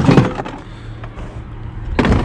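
Plastic Milwaukee Packout organizer being lifted off a metal mounting plate and carried down, with handling knocks and a brief louder noise right at the start, over a low steady hum.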